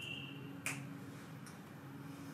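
A single sharp click a little over half a second in, over a steady low hum.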